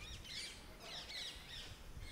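Small birds calling in trees: clusters of quick, high chirps, one burst near the start and another a little after a second in, over faint outdoor background noise.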